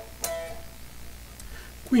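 Electric guitar picked once high on the neck about a quarter second in, the note ringing briefly and fading away. A spoken word starts right at the end.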